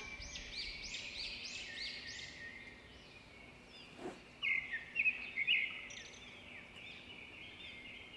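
Small songbirds chirping faintly: a quick run of high, arching chirps at first, then a louder cluster of chirps around the middle, fading to scattered chirps.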